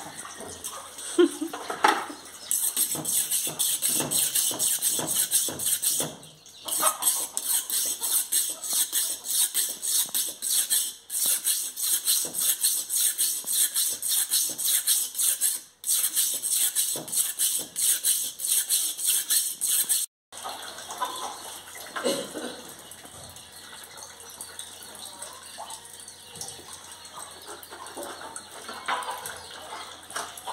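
A dull kitchen knife, freshly wetted, being sharpened by rubbing it back and forth on a flat block: a rapid, rough, high scraping, broken by brief pauses. It stops abruptly about twenty seconds in.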